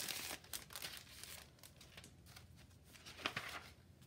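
Faint rustling and crinkling of paper and a clear plastic sleeve as a stationery kit is handled and opened. A denser rustle at the start gives way to scattered soft crackles, with one sharper crinkle near the end.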